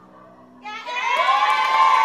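Audience cheering and screaming, breaking out loudly about half a second in, led by a high-pitched shout that rises and is then held.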